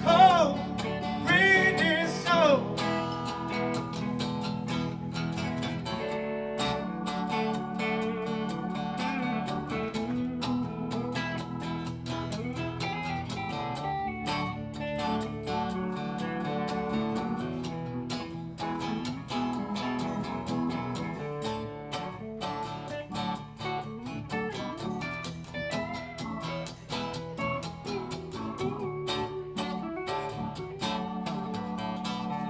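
A live band playing: a sung vocal line ends about two seconds in, followed by an instrumental passage of strummed acoustic guitar with electric guitar and keyboard.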